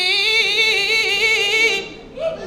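A man's voice chanting a Qur'an recitation in melodic style through a microphone, holding one long note with a fast wavering ornament. The note ends just before the end, with a brief pause for breath.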